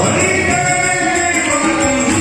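Devotional song: voices singing over instrumental accompaniment at a steady, even loudness.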